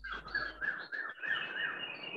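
A bird chirping through a video-call microphone: a quick run of short repeated notes, about four a second, with a thin, steady, higher note joining about a second in.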